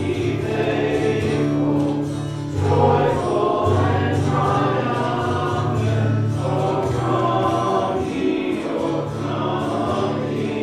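Congregation singing a hymn together, over held low notes from the accompaniment.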